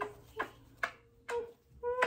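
Rapid kisses: lips smacking about twice a second, some with a short 'mm' hum.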